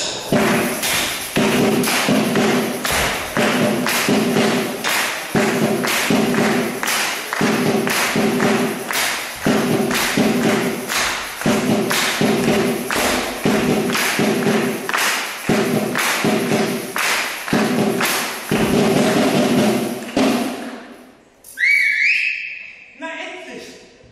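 A dancer's steady body-percussion beat of stamps and claps on a wooden floor, about two strokes a second, stopping about 21 seconds in. A brief high rising whistle-like sound follows near the end.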